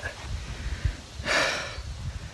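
A hiker's single heavy breath, a short noisy inhale or exhale about a second and a half in, taken while walking uphill with a pack, over a low rumble of wind on the microphone.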